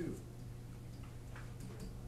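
A stylus tapping and clicking lightly and irregularly on an interactive whiteboard as a fraction and an equals sign are written.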